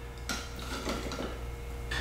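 Light metallic clinks and handling sounds from a stainless steel Stanley cook pot being turned over in the hands.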